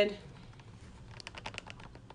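A quick run of about eight light clicks and taps, a little past halfway in, from a hand handling the camera close to the microphone.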